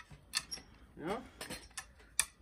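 A few sharp metal clicks and rattles from a pop-up canopy tent's telescopic leg as its inner section is slid and adjusted by its holes.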